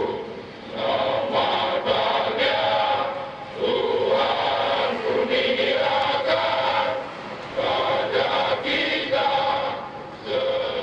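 Male voices singing together in a slow chant, in long held phrases with short breaks between them.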